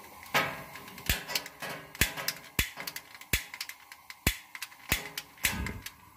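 Gas oven's spark igniter clicking repeatedly, about eight sharp clicks at an uneven pace, while lighting the burner.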